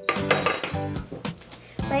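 Background music with a few light metallic clinks as steel nails are handled and set against one another.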